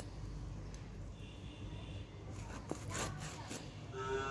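Fish flesh and skin being sliced against the upright blade of a boti, heard as faint, short scraping strokes, a few of them in the second half.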